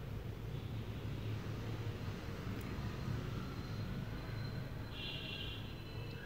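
Faint steady low hum with a light hiss from chopped onions frying gently in a little oil in a steel kadai on a gas stove.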